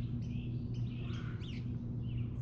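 Wild songbirds chirping, a run of short high notes and quick falling calls, over a steady low hum.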